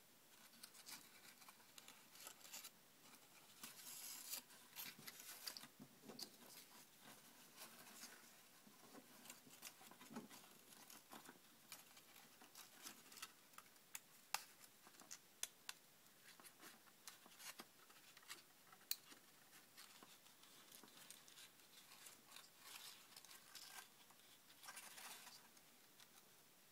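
Faint rustling of cardstock handled by hand, with scattered small clicks, as string is threaded through the holes of a paper crab's claw.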